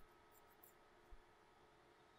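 Near silence: faint room tone, with one very faint tick about a second in.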